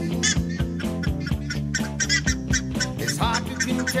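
Buff-necked ibises (curicacas) giving honking calls over a rock song with a steady beat, the calls coming through more clearly near the end.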